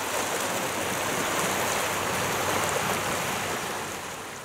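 Small waves washing over a rocky lakeshore, a steady wash of water that fades out near the end.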